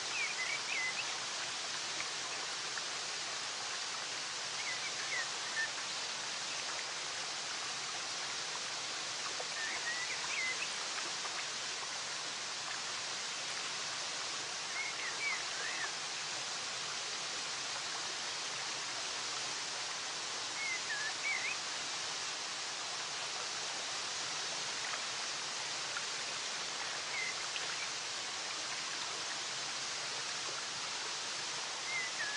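Steady sound of flowing, falling water, with a small bird giving a short burst of chirps about every five seconds.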